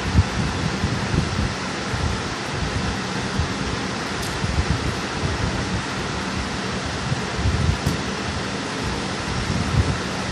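Steady fan-like rushing background noise, with irregular low bumps and rustles of hands fitting crimped wire terminals onto a variac's terminal block.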